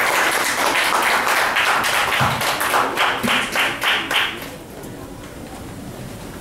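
Audience applauding, dense clapping that dies away about four and a half seconds in.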